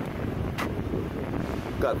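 Wind buffeting the microphone: a steady, rough low rumble, with a faint click about half a second in.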